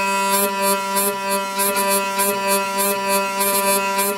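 Hurdy-gurdy trompette string sounding one steady drone note on G. A rasping buzz breaks in on it about three to four times a second, tapping out a rhythm as the crank is pushed.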